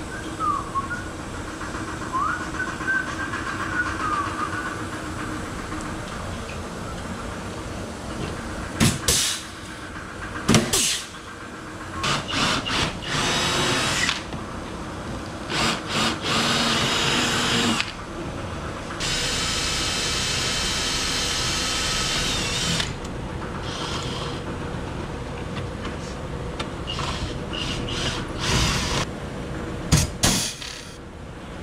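Hand-held pneumatic air tool running in a series of short bursts. There are longer runs around the middle, including one steady run of about four seconds.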